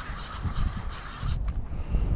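Wind buffeting the microphone: a low, gusty rumble with a high hiss that cuts off about one and a half seconds in.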